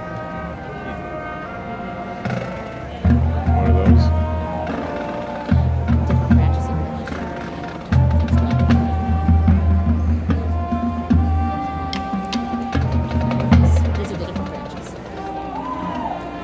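Marching band playing: held brass chords over drums and percussion, with loud low passages that start abruptly several times, the first about three seconds in.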